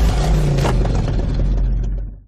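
Loud, bass-heavy car engine revving sound effect in a show's title sting, fading near the end.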